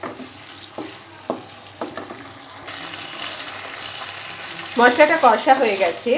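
A spatula stirring and scraping cauliflower, potatoes and masala paste in a non-stick wok, with short knocks against the pan over the frying sizzle. The sizzle grows louder and steadier about halfway through.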